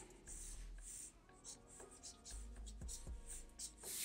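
Black felt-tip marker drawing on paper: a series of short, faint sketching strokes.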